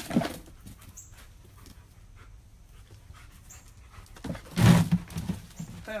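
A dog panting in short, irregular breaths, loudest a little past four seconds in.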